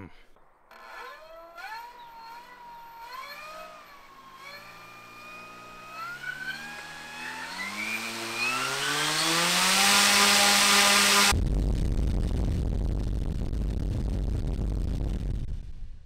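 Large brushless electric motor (EA98) driving a 30-inch four-blade propeller spooling up to full power: a whine rising in pitch in steps over about ten seconds, with a growing rush of propeller air. About eleven seconds in the whine gives way abruptly to heavy wind rush buffeting the microphone, which dies away near the end.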